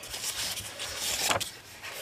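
Pages of an old paper book being turned by hand: a dry rustling, with a sharper flick of paper a little over a second in.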